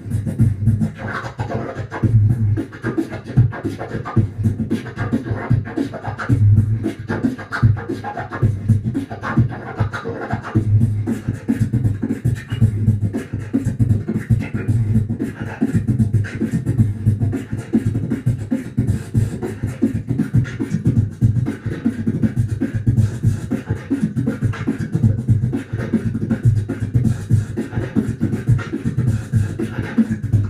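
Beatboxing into a handheld microphone: a fast, continuous freestyle rhythm of deep bass kicks and sharper snare and hi-hat sounds made with the mouth.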